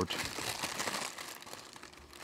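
Thin plastic bag wrapping crinkling as it is handled and pulled off a statue part, fading toward the end.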